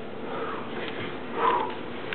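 A man breathing hard through nose and mouth from exertion in the middle of a no-rest workout circuit: a soft breath about half a second in, then a louder, sharper exhale about one and a half seconds in.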